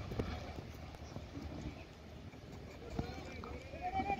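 Players' voices at a cricket ground with faint thuds. Near the end a player starts a drawn-out shout that rises in pitch.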